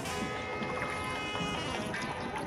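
Background music with held notes over the water sounds of a wooden boat paddle being stroked through calm lake water.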